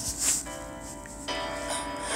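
Piano chords ringing on, with a new chord struck about a second and a half in, and a brief hiss near the start.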